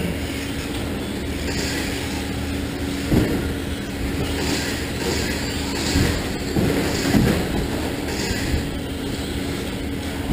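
Stock Traxxas Slash RC trucks racing on an indoor dirt track: a steady mix of small electric-motor whine and tyre noise, broken by a few knocks about three, six and seven seconds in.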